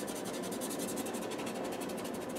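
Pastel pencil scratching and rubbing across textured drawing paper in rapid, closely spaced short strokes.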